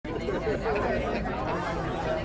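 Indistinct talking: voices chattering, with no clear words.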